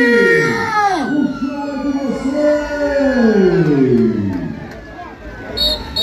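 A man's voice through a microphone and loudspeakers, singing long notes that each slide down in pitch, several in a row, like a wail. Near the end come a few short, high-pitched toots.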